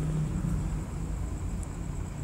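Steady low hum and rumble with a faint even hiss and a thin, steady high-pitched whine: background noise of the room and the sound system.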